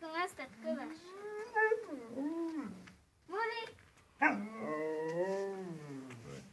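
Siberian husky vocalising in long, wavering calls that rise and fall in pitch, four in a row, the last two seconds long.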